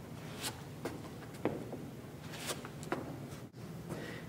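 Rubber-soled sneakers scuffing and tapping on a hard floor as the feet step and pivot: several short, faint scrapes scattered through, in two small clusters about a second apart.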